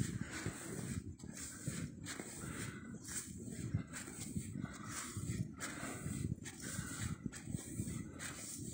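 Footsteps crunching through deep snow at a steady walking pace, about one step a second, with the walker breathing hard.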